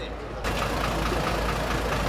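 A fire engine's diesel engine idling steadily, starting suddenly about half a second in, with voices talking over it.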